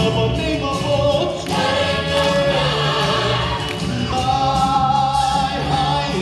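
Rock band with a group of voices singing together, holding several long sung notes.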